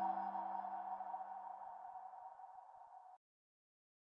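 Closing logo sting: a held chord of steady tones dying away, cut off abruptly about three seconds in, followed by digital silence.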